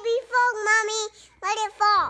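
A little girl's high voice in a sing-song, saying "It's a baby frog, mommy, my little frog" in two short phrases.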